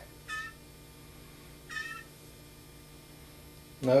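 Young blue jay giving two short, high calls about a second and a half apart.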